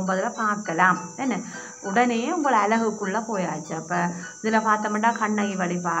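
A woman's voice speaking in a lecture, with short pauses, over a steady high-pitched background hum.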